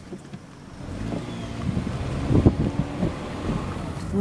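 Car driving, heard from inside the cabin through an open window: engine and road noise grow louder about a second in, with wind on the microphone and a knock midway.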